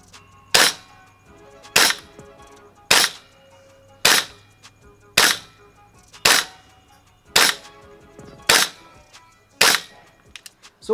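EMG CGS Noveske N4 gas blowback airsoft rifle firing nine single shots on green gas through a chronograph, about one shot a second, each a sharp crack.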